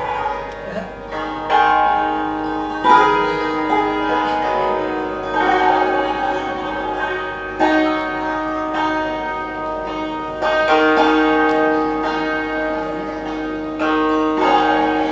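Santoor, a Kashmiri hammered dulcimer, played with light curved wooden mallets in Hindustani classical style. Quick runs of struck notes ring on and blend, with a few sudden louder accented strikes.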